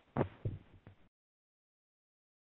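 A few short, faint low thuds in the first second, then the sound cuts to dead digital silence.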